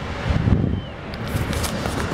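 Wind buffeting the microphone: a steady low rumbling noise, with a few faint crackles in the second half.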